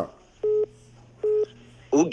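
Two short, identical electronic telephone beeps about a second apart on the call line, over a faint steady hum.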